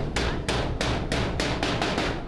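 Hammer blows on the edge of a sheet-metal door, a quick regular run of about seven strikes, three or four a second, that stops at the end.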